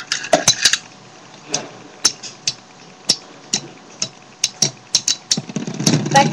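Lightning L-Drago and Storm Pegasus Beyblade Metal Fusion tops spinning and clashing in a plastic stadium: a long run of sharp, irregular metallic clicks and clacks, loudest in the first second, over a faint whir.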